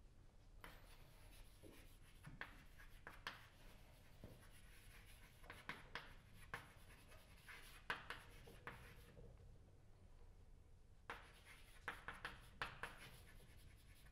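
Chalk writing on a chalkboard: faint clusters of taps and scratches as letters are formed, in two spells with a pause of about two seconds between them.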